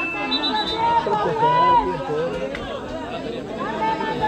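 Untranscribed voices of people at the pitch side, players and spectators talking and calling out. A steady high tone at the start stops about half a second in.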